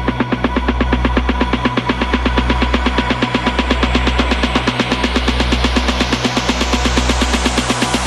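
Melodic techno from a DJ mix: a sustained synth bass that changes note about every second and a half under a fast, even pulsing synth pattern. Through the second half a rising sweep brightens steadily, building up the track.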